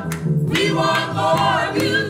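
Gospel choir singing, several voices together holding and moving through sung notes over sustained low notes.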